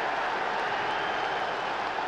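Football stadium crowd noise: a steady wash of many voices from the stands with no single event standing out.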